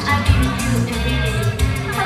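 Idol pop song played loud over a stage PA system, with electric guitar and a steady drum beat.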